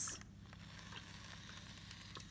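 A steam iron pressing a fabric fold: a short hiss of steam right at the start that stops within a fraction of a second, then only a faint hiss.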